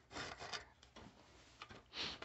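Brief rubbing noise of a handheld phone being handled, in the first half second, then a quiet room with a few faint scuffs.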